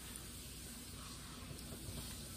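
Quiet room tone: a faint steady hiss with a couple of tiny ticks near the end, and no distinct sound.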